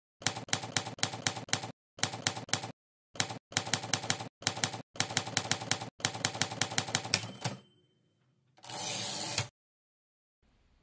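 Typewriter keys struck in quick runs with short pauses between words for about seven seconds. Then a brief ring, and near the end a rasp of about a second, like the carriage being returned.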